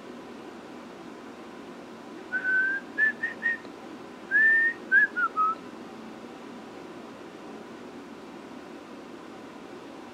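A person whistling a short tune in two brief phrases of a few notes each, the second phrase ending on falling notes, over a steady low room hum.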